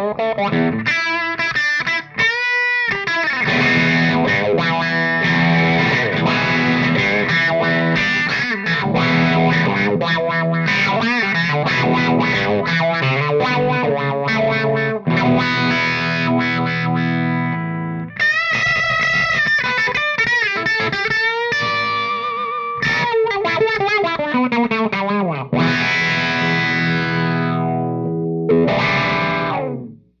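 Overdriven electric guitar played through a Real McCoy Custom RMC5 Wizard Wah pedal, the wah rocked back and forth so the tone sweeps up and down across riffs and chords. There are a few short pauses between phrases, and the playing stops just before the end.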